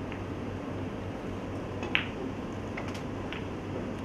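A single sharp click of snooker balls striking each other about two seconds in, followed by a few fainter ticks, over a steady low room hum.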